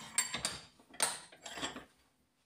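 An aluminium plate clinking and scraping against the jaws of a steel bench vise as it is handled and lifted out, in three short bursts.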